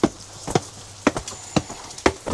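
Footsteps climbing stone steps: a string of six or seven sharp, uneven knocks.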